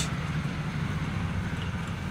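Steady low engine rumble, like a motorbike running nearby, with a faint street hum.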